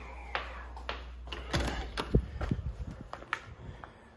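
A back door being opened: a few sharp clicks from the handle and latch, the strongest about a second and a half in, then light knocks and footsteps as someone steps out through it.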